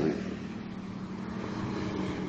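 Pause in the talk: a steady low background hum with faint hiss.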